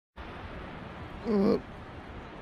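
A man's short groaning 'uh', about a third of a second long and a little over a second in, over a steady background hiss.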